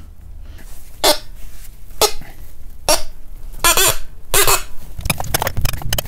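A brass radiator-valve union nut being forced with large pipe wrenches at maximum effort: about five short metal-on-metal squeaks roughly a second apart, then a quick run of metallic clicks near the end. The nut is being deliberately over-tightened to test whether it cracks.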